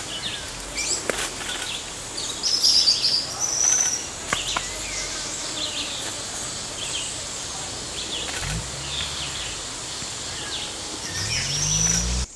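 Tropical forest ambience: assorted birds chirping and trilling, scattered over a steady high insect drone.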